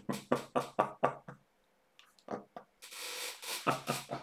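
A man laughing: a quick run of about six short voiced "ha" pulses, about four a second, then a brief pause, then breathy, gasping laughter from about three seconds in.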